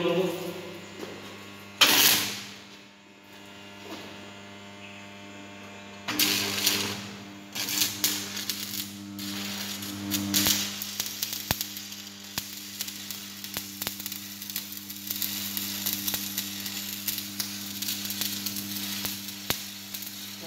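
Manual stick arc welding on steel plate: after a couple of short, louder bursts, the electrode's arc crackles and sizzles steadily from about seven seconds in. Under it runs the steady hum of the welding transformer.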